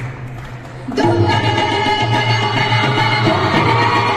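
A women's group singing an Indian group song through a stage sound system, with instrumental accompaniment. The music is quieter for about the first second, then the full ensemble comes back in.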